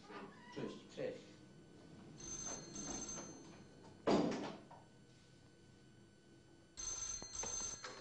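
Old telephone's bell ringing twice, each ring about a second and a half long, the second coming about four and a half seconds after the first. A loud thud falls just after the first ring.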